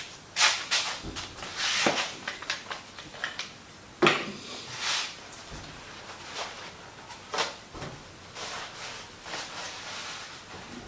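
Handling noises at a workbench: paper towel rustling as it is pulled off a roll and torn, among irregular knocks and clicks of things being picked up and set down, the sharpest about four seconds in.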